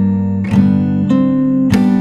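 Acoustic guitar played fingerstyle with a capo: a rolled E-major chord about half a second in, then single plucked notes ringing over the held bass.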